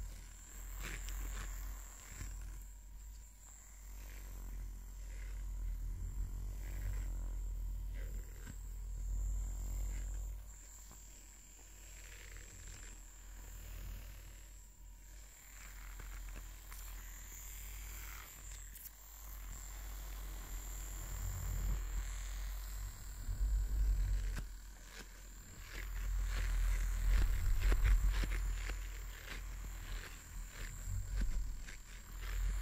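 A silicone facial cleansing brush rubbed over a fluffy microphone cover: muffled rustling and deep rumbling that rise and fall in slow waves, loudest near the end.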